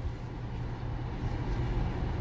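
Steady low hum inside a car's cabin, with a faint constant tone under a low rumble and no distinct events.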